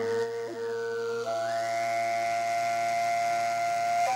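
Mongolian overtone singing (khöömii): a steady low drone with a clear whistling overtone on top, which steps up to a higher held note about a second in.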